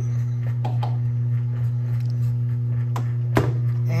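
Zojirushi bread machine motor running as it kneads dough, a steady low hum, with a few soft knocks and one sharper knock about three and a half seconds in.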